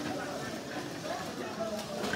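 Indistinct background chatter of several people talking, with a single faint click near the end.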